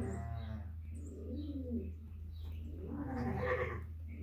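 Sheep bleating, once at the start and again about three seconds in, with repeated low cooing calls in between. A steady low hum runs underneath.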